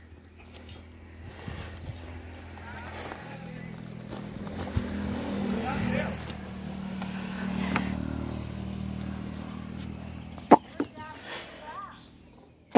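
A motor vehicle's engine running steadily as it passes, growing louder to a peak in the middle and then fading. A couple of sharp knocks follow near the end.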